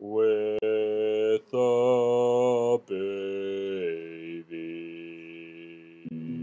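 A voice singing long held notes without words, about five in a row with short breaks between them, growing quieter toward the end.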